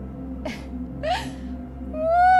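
A woman sobbing: a brief gasping breath about half a second in, then a short whimper rising in pitch about a second in, over soft background music.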